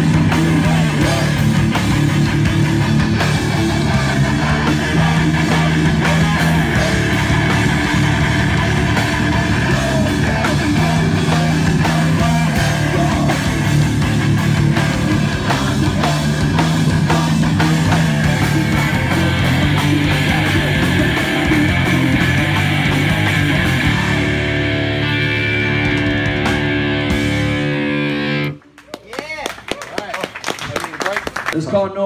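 Hardcore punk band playing live: distorted electric guitar, bass and drums with a vocalist shouting into the microphone. For the last few seconds a chord rings out, then the song stops abruptly.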